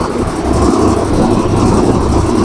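A loud, steady engine rumble, as of a motor vehicle running close by.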